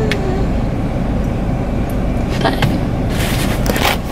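Steady low rumble of a car heard from inside its cabin, with a short spoken word a couple of seconds in.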